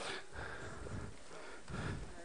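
Faint room noise of a large hall, with soft indistinct movement and a few low thumps between speeches.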